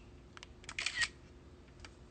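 A few short, faint clicks in a pause, the loudest cluster about a second in.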